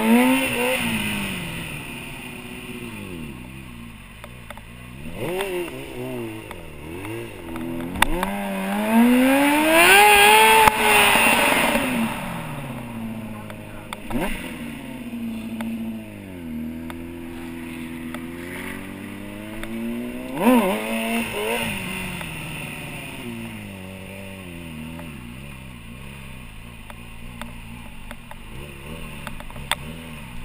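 Stunt motorcycle engine revving up and down as it is ridden. The biggest rise comes about eight seconds in, climbing to a peak near eleven seconds before falling away, followed by lower, wavering revs with short blips.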